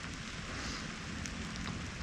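Light drizzle falling steadily, with a few faint ticks of raindrops landing close to the microphone.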